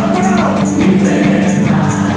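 Live gospel worship band playing an upbeat praise song: electric guitar and drums with a steady, evenly repeating cymbal or tambourine beat, and voices singing along.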